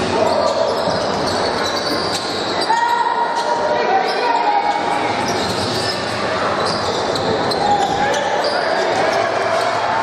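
Basketball being dribbled on a hardwood gym court during live play, under steady crowd chatter echoing in a large hall.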